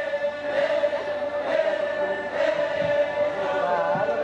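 A group of voices chanting together on one long held note, with other voices weaving above it.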